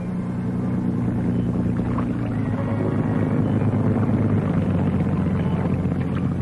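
Motor launch's engine running with a steady low drone as the boat travels.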